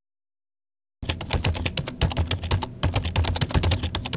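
Rapid computer-keyboard typing, many keystrokes a second, starting about a second in after a moment of dead silence.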